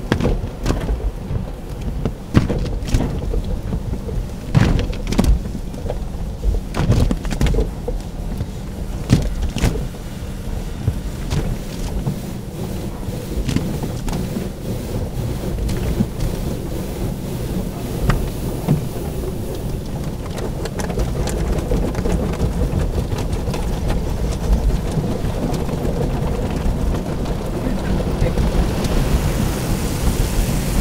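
Automatic car wash heard from inside the car: water spray and wash brushes drumming and slapping on the windshield and body over a low rumble. Many sharp slaps in the first dozen seconds, then a steadier rush of spray that grows louder and hissier near the end.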